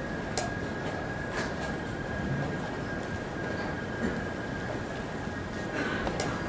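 Steady playing-hall ambience with a faint high-pitched tone running throughout. Scattered sharp clicks of wooden chess pieces and clock buttons are heard, with a louder knock of a piece being moved near the end.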